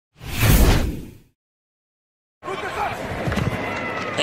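A loud whoosh sound effect, about a second long, over an animated team-logo intro. Then a second of silence, and the game broadcast's stadium crowd noise starts.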